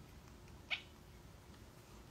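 A three-week-old newborn's single brief, high squeak, like a small fussy cry, a little way in. Faint room tone otherwise.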